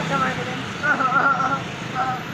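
Men's voices talking over a steady low hum of background traffic.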